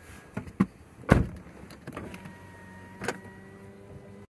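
Car power window running inside the car, after a few knocks and one loud thump about a second in; a steady hum holds through the second half.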